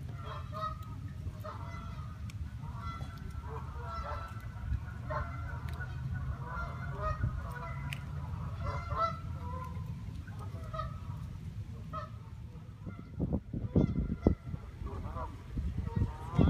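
Canada geese honking in many short, repeated calls over a steady low rumble, with a few louder low thumps about three-quarters of the way through.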